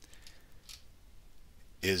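A few faint clicks at a computer while a terminal window is scrolled, with a man's voice starting again near the end.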